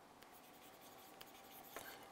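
Faint scratches and taps of a stylus writing on a digital pen tablet, near silence otherwise.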